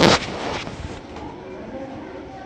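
A single sharp, loud slap right at the start, with a short noisy tail, then quieter sounds of movement.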